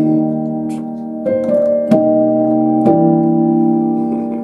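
Piano playing slow, sustained gospel chords. A new chord is struck about a second in, another just before two seconds, and another near three seconds.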